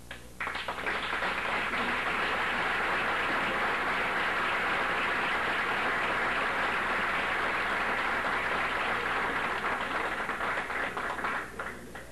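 Audience applauding: dense clapping that starts suddenly about half a second in, holds steady, and dies away near the end.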